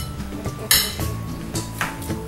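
A metal fork scraping and clinking against a plate of macaroni twice, the first time louder, over background music.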